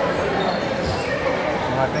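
Several people's voices chattering, echoing in a large gymnasium.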